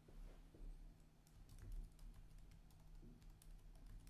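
Near silence: a low steady hum with many faint, irregular clicks.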